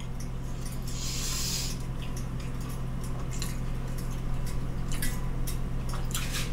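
Steady low electrical hum from running kitchen appliances, with soft scattered clicks of chewing as a toasted hot dog is eaten and a brief hiss about a second in.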